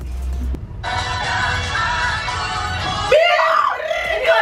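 A short snippet of a recorded pop song, played as a guess-the-song clue, starting about a second in and cut off after about two seconds. A woman's excited exclaiming follows as it stops.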